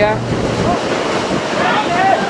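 Wind rushing over the microphone, a steady noise, with faint voices calling out on the pitch about half a second in and again near the end.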